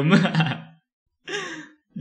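A man's voice trailing off at the end of a word, then about a second and a quarter in a short breathy exhale.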